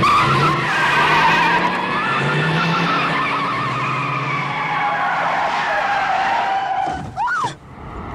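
Car tyres squealing in a long, wavering screech over a running engine as a vehicle pulls away hard, from a film soundtrack. The screech eases off about seven seconds in.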